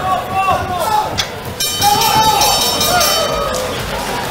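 Boxing ring bell ringing to end the round, starting about one and a half seconds in and lasting about two seconds, over shouting voices.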